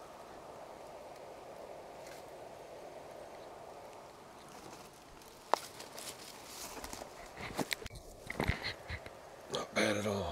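Handling noises on a dry, grassy, leaf-strewn bank after a stretch of faint steady background noise: a sharp click about halfway through, then scattered knocks and rustles as a freshly caught largemouth bass is picked up off the dry grass.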